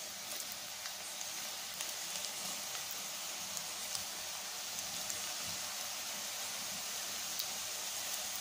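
Cashew pakoda deep-frying in a kadai of hot oil: a steady sizzle with faint scattered crackles.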